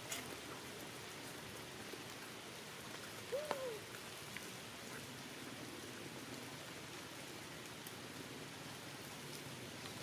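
Steady rain falling on forest leaves, with scattered drips. About three and a half seconds in, a brief squeak rises and falls in pitch above the rain.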